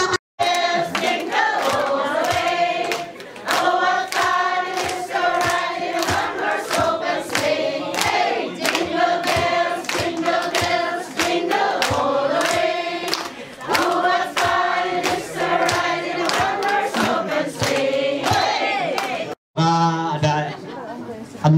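A crowd of people singing a song together, with steady hand clapping keeping the beat.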